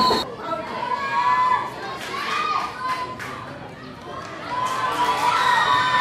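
Football spectators shouting and cheering, several voices calling out at once. The shouting eases off about halfway through and swells again near the end.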